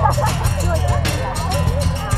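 Background music with a steady beat under the overlapping chatter and laughter of a group of teenage girls, with no single voice clear.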